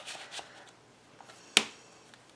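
Cardstock picture mats being slid into and handled in a paper pocket of a scrapbook album: soft paper rustles, with one sharp click about one and a half seconds in, the loudest sound.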